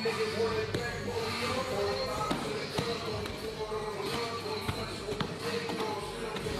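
Strikes landing on a hand-held pad during gym sparring: a series of irregular thuds, with music and voices underneath.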